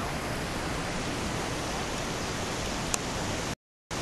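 Steady rush of a mountain creek, an even noise with no pitch, with one brief click about three seconds in. The sound cuts out abruptly to silence for a moment near the end.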